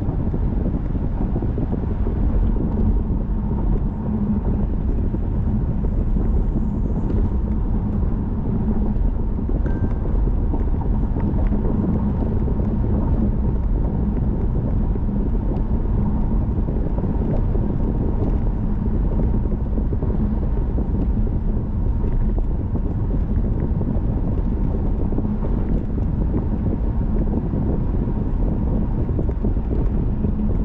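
Steady road noise from inside a moving car: tyres rolling on a concrete road and the engine at cruising speed, a constant low rumble with a faint steady hum.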